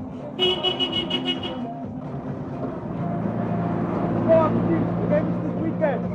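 A vehicle horn sounds for about a second, then an Isuzu pickup truck's engine runs and builds steadily as the truck drives off, with voices calling out over it.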